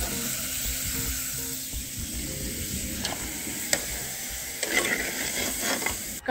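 Pirandai (veld grape) stem pieces sizzling as they fry in a clay pot, stirred with a metal spoon. Two sharp clicks come about three seconds in.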